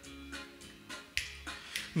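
Korg Pa800 arranger keyboard playing a quiet song intro: sustained low notes under a finger-snap beat about twice a second. A man's singing voice comes in at the very end.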